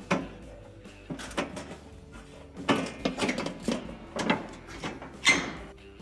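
Glass cooktop of a Whirlpool electric range being set onto the range frame and shifted back, several knocks and scrapes of glass on metal as its rear clips are worked into place. Faint background music underneath.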